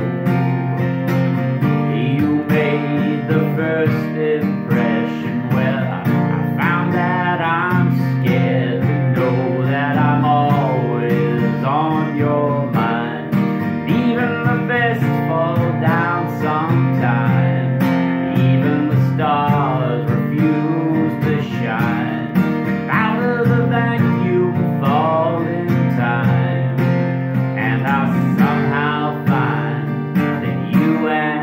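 Acoustic guitar strummed steadily, unamplified, with a man singing over it.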